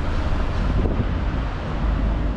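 Wind buffeting the microphone of a bike-mounted camera, a low rumble, over the steady noise of city traffic, with a faint click just before a second in.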